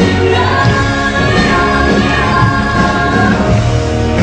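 Pop song performed live: a young woman singing over band accompaniment, with a long held vocal note that ends a little after three seconds in while the band carries on.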